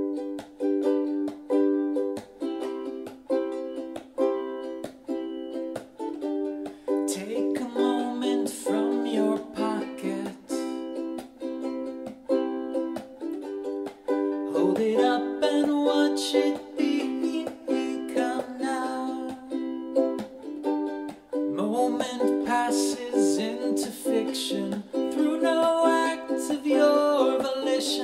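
Ukulele strummed in steady chords, with a man's voice singing over it in stretches from several seconds in.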